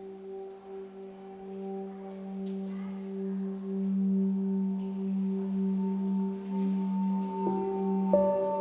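Background music: a sustained, pulsing drone of low held tones that swells slowly louder, with a higher held note joining near the end.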